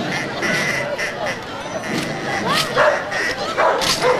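A dog barks twice near the end, over the chatter of a street crowd.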